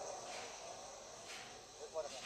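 Insects chirring steadily in woodland, with faint voices murmuring.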